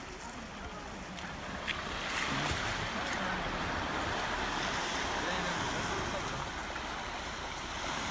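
Small waves washing gently onto a sand and pebble shore, a steady wash of water that grows slightly louder after about two seconds.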